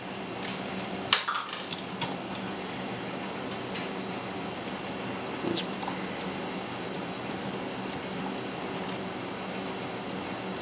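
Small clicks and taps from hands handling a tube of plumber's faucet valve grease and the plastic agitator parts, the sharpest about a second in, over a steady low hum.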